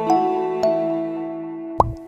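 Gentle children's background music of soft, bell-like sustained notes, with a short rising 'plop' sound near the end as the music fades out briefly.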